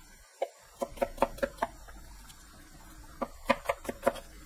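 Chef's knife chopping onion into a fine dice on a plastic cutting board: quick knocks of the blade on the board, about five a second, in a run about a second in and another near the end, with a short lull between.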